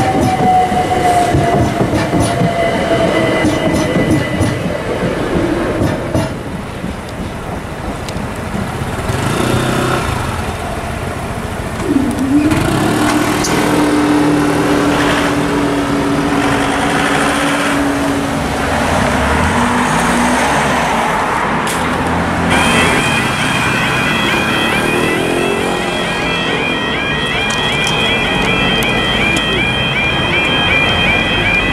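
Electric train passing over a level crossing, its motor whine falling in pitch, with road traffic around. Partway through a steady hum sets in for several seconds, and about three-quarters of the way in the crossing's warbling two-tone alarm starts and repeats steadily.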